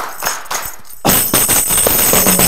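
Headed tambourine played by hand: a couple of soft hits, then about a second in its jingles start ringing continuously and loudly under quick, repeated strikes.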